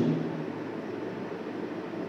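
Steady room noise, an even hiss with no distinct events, after a man's voice trails off at the start.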